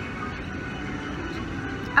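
Steady background noise of an airport terminal, an even hum with faint tones running through it.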